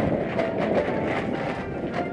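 Marching percussion ensemble playing a loud, dense passage: drums and cymbals with a rumbling, rapid texture, and tones from the marimbas and vibraphones under scattered accents.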